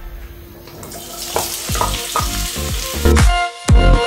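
Sliced onions hitting hot cooking oil in a frying pan and sizzling, the hiss starting about a second in as they are tipped in and stirred with a wooden spatula. Background music with a steady beat comes in loud near the end.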